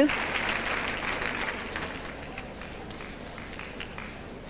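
Arena crowd applauding, the applause loudest at first and dying away over about two seconds into a low hall murmur with a few scattered claps.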